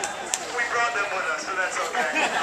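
Crowd chatter: several people talking over one another, one voice standing out more clearly through the second half, with a sharp click shortly after the start.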